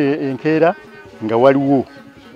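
Speech only: a man's voice in two long, drawn-out utterances.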